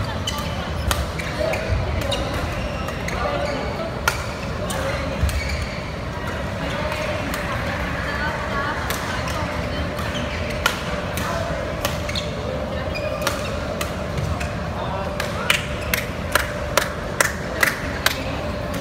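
Badminton rackets striking the shuttlecock during a rally, sharp smacks every second or two, over the murmur of voices in a large sports hall. Near the end, a quick run of about seven sharp knocks.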